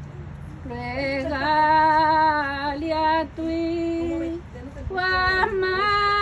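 A woman singing a Spanish hymn to the Virgin Mary in long, held notes. She starts about a second in, drops to a lower note midway, pauses briefly, and takes up the melody again near the end.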